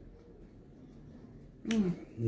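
Quiet room with a faint click at the start, then near the end a man's short vocal sound, a single syllable falling in pitch with a sharp onset.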